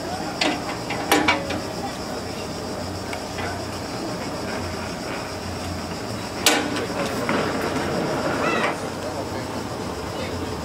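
Large single-cylinder 1910 National gas engine running slowly, with a low rhythmic chug roughly once a second and sharp clicks about a second in and again after six seconds.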